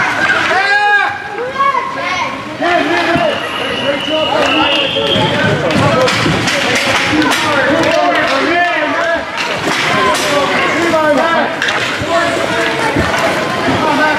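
Many voices shouting and calling over one another at a youth ice hockey game, with scattered knocks of sticks and puck on the ice.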